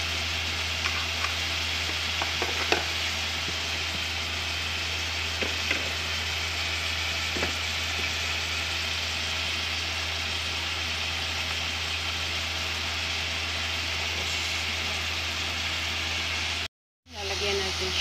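Chicken pieces and spice powder sizzling steadily in a metal pot on the heat, over a steady low hum, with a few light clicks. The sound cuts out for a moment near the end.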